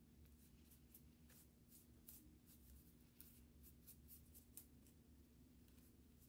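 Near silence, with faint soft scratches of a small brush swirling dry pearl pigment powder over cardstock, about two or three strokes a second.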